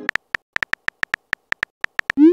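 Phone keyboard typing sound effect: a quick, uneven run of short, high clicks, one for each letter typed, about fourteen in two seconds.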